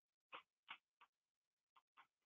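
A few faint, short taps of chalk on a blackboard as an equation is written.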